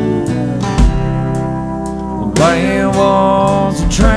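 Country band playing an instrumental gap between sung lines: strummed acoustic guitar over bass and a drum kit, with long held notes and a sliding note about two and a half seconds in, in the manner of a lap steel guitar. Two low kick-drum thumps fall about a second in and near the end.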